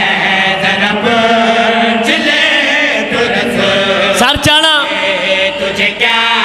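Several men chanting a Muharram devotional refrain in praise of Husayn together into microphones. One voice slides up and back down about four seconds in.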